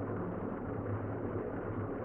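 Room tone: a steady low hiss with a faint hum underneath.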